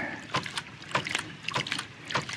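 Brass waste valve of a hydraulic ram pump clacking shut again and again, several sharp clacks a second, with water spurting and splashing out around it as it is worked by hand to start the pump cycling.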